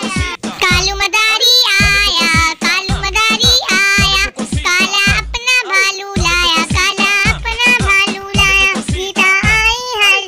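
A high voice singing a Hindi children's song over backing music with a steady low beat.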